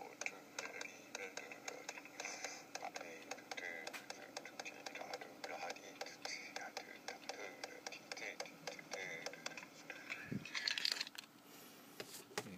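Rhythmic finger taps, several a second, with a soft voice singing along: a tapping-and-singing timing take played back. A louder rustle near the end.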